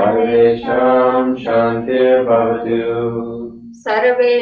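A Sanskrit mantra chanted to a slow, sung melody, with held syllables and a short break for breath near the end.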